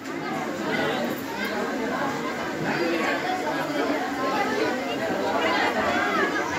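Hubbub of many children chattering and talking over one another, with no single voice standing out.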